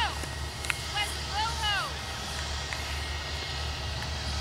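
Airbus A321 jet engines running at a distance, a steady low rumble with a faint hiss over it, while a high-pitched voice calls out briefly about a second in.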